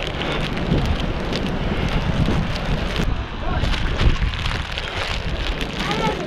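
Wind buffeting the microphone: a steady rushing noise with a low rumble, with a few faint ticks scattered through it.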